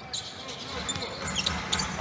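Game sounds from a basketball court: a ball dribbled on the hardwood floor and short high-pitched sneaker squeaks over a low arena crowd noise.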